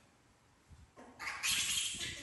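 A baby monkey screeching: one shrill cry that starts about a second in and is loudest near the end.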